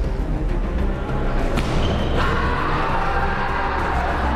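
Background music laid over the match footage, growing fuller and brighter about two seconds in, with one sharp knock about a second and a half in.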